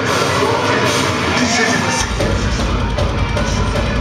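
Live deathcore band playing loud through a club PA, heard from within the crowd: distorted guitars and drums, with a heavy low bass and kick-drum section dropping in about halfway through.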